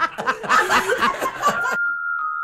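Two people laughing together, a man and a woman, cut off suddenly near the end by a steady high electronic tone as a station jingle begins.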